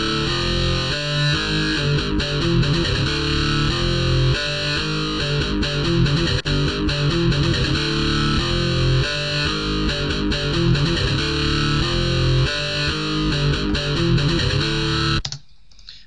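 FL Slayer software electric guitar with distortion playing a programmed metal riff: low notes chugging, palm-muted because the plugin's dampening is tied to the lowered note velocities, with a short run of higher notes. It cuts off suddenly about a second before the end.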